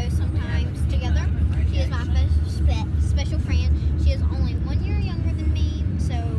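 Children's high voices talking over the steady low rumble of a car, heard from inside the cabin.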